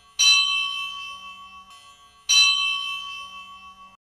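A high-pitched bell struck twice, about two seconds apart, each stroke ringing on and slowly fading.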